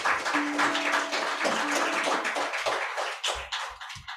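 Congregation applauding, a dense spread of clapping that dies away near the end, with a guitar playing softly underneath.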